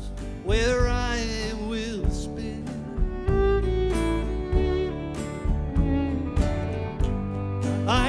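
Live country band playing: strummed acoustic guitar, keyboard and fiddle, with the fiddle's bowed line sliding through the melody.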